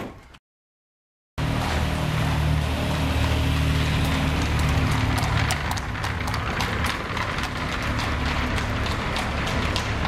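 Horses galloping and a carriage rattling over cobblestones: a dense, loud clatter of hooves and wheels that starts suddenly after a second of silence, over a low, sustained drone.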